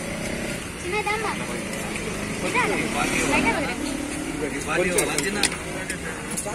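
Several voices chattering over a steady low traffic rumble, with two sharp clicks about five seconds in.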